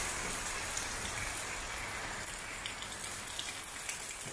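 Rain falling steadily, an even hiss.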